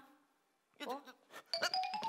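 A woman's short, surprised "ủa?", then from about a second and a half in a few quick, bright, ringing struck notes from the play's musical accompaniment, the last one held.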